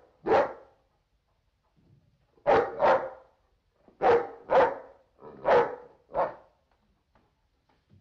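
A dog barking: about seven sharp barks, some coming in quick pairs, over the first six seconds.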